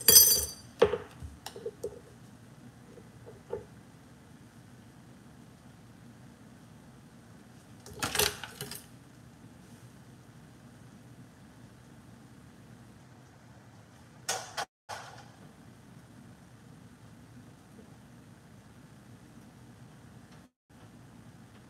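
Kitchen handling sounds: a loud clatter at the start, a few light clicks, and two short noisy bursts of pans, foil and utensils about eight and fourteen seconds in, over a low steady hum.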